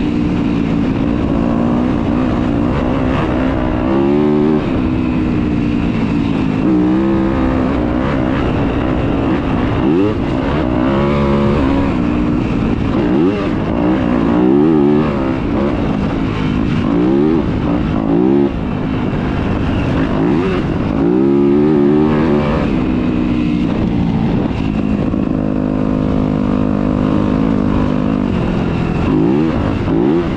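Yamaha YZ250 two-stroke dirt bike engine being ridden hard, its pitch climbing and dropping over and over as the rider works the throttle and gears.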